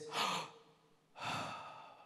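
A man sighing into a handheld microphone, a breath of wordless awe. A short breath comes first, then a longer sigh that fades away.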